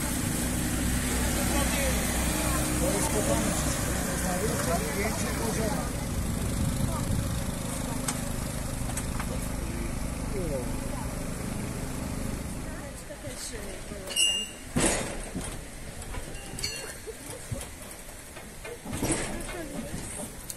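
A boat's engine running with a steady low hum under passengers' background chatter. The hum stops about two-thirds of the way through, and a few sharp knocks follow.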